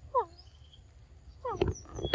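Macaque giving short, squeaky calls that fall in pitch, twice: once just after the start and again about a second and a half in. The second group comes with a few sharp clicks.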